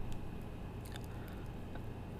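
Steady low hum of room tone picked up by the narration microphone, with a few faint soft clicks about a second in and again near the end.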